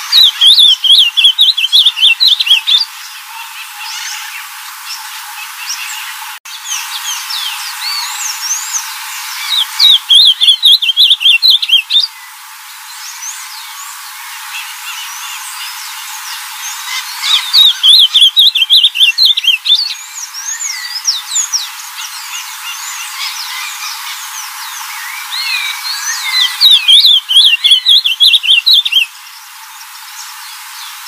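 Ultramarine grosbeak (azulão) singing: four short, quick warbled phrases, each a couple of seconds long and about eight seconds apart, with fainter chirps of other birds in between.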